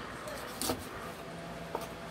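Knife cutting a chicken leg apart at the joint on a plastic cutting board, the blade knocking against the board once sharply and once lightly near the end, over a steady background hiss.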